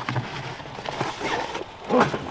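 Cardboard box being lifted out of a portable fridge's wire basket, rustling and scraping, with no sharp knocks.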